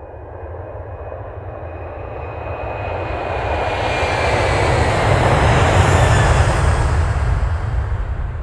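A rumbling roar sound effect, like an aircraft flying over, laid over the closing logo: it swells steadily louder for about five seconds, peaks, then eases slightly near the end.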